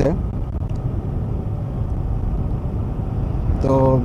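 Yamaha sport motorcycle cruising steadily at about 30 km/h: an even low rumble of engine, tyre and wind noise.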